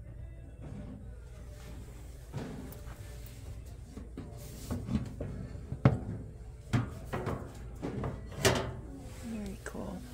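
Objects being handled on a wooden shelf, giving a few sharp knocks and clinks, the loudest about six and eight and a half seconds in, over indistinct voices and a low background hum.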